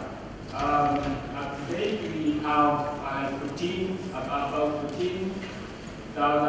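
Speech only: a man talking steadily into a lectern microphone.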